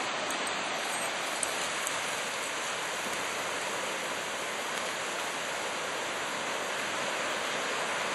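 Steady wash of ocean surf breaking on a beach, an even hiss with no let-up.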